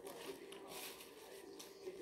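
Faint rustling and crinkling of a paper food wrapper being handled, over quiet room tone.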